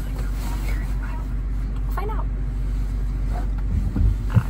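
Steady low rumble of a car heard from inside the cabin, with a few faint words of speech about two seconds in.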